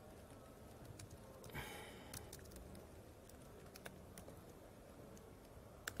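Faint, scattered key clicks of a laptop keyboard as a terminal command is typed. There is a short, faint vocal sound about one and a half seconds in.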